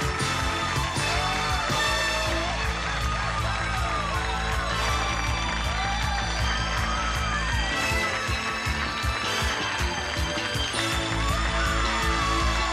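Game show closing theme music with a steady beat and a melody line.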